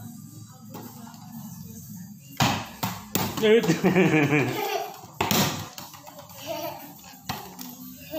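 A young child vocalising in wavering, pitched sounds, with a couple of sharp knocks and a steady low hum underneath.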